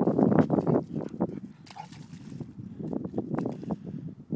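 Irregular soft splashes and squelches of steps in wet mud, busiest in the first second and then scattered.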